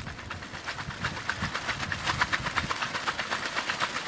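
Wood fire crackling with dense, rapid, irregular pops under a whole snakehead fish roasting on a stick over the flames.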